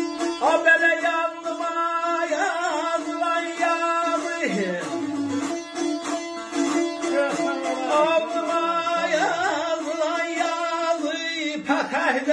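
Azerbaijani saz played in a quick, even strum over a steady drone string, carrying an ornamented aşıq melody.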